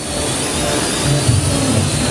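Parrot AR.Drone 2.0 quadcopter hovering: its four electric rotors give a steady high whine over a low hum. The whine wavers slightly in pitch, and the hum grows stronger about halfway through.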